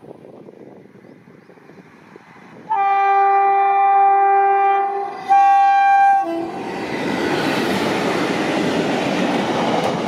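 Electric locomotive's air horn, a WAG-7 leading an empty freight train: one long two-tone blast of about two and a half seconds, then a shorter blast of about a second. From about six and a half seconds in, a loud steady rumble of the train running past on the rails.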